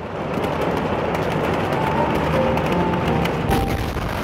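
Phone-microphone recording of a huge explosion's blast wave: a loud, rough rush of air and flying debris full of crackles, loudest near the end, with the recording cutting off abruptly just after.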